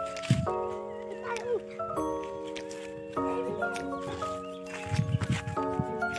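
Background music: sustained chords that change every second or so.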